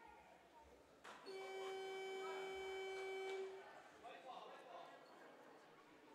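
Gymnasium scoreboard horn sounding one steady, buzzing tone for about two seconds, starting about a second in, over faint gym noise.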